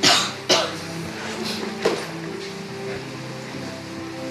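A person coughing: two sharp coughs about half a second apart, then a lighter one near the middle, over a steady bed of low sustained tones.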